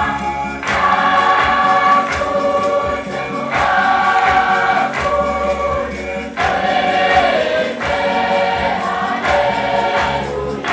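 Choir singing a hymn with a steady percussive beat.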